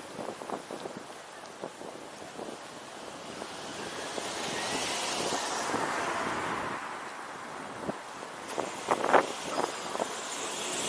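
City street traffic heard from the roof of a car waiting at an intersection. A passing car's tyre and engine noise swells and fades around the middle, and a few brief sharper sounds come near the end.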